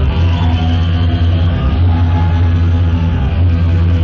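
Loud music from a DJ set, played off turntables and a mixer through club speakers, with a heavy, steady bass.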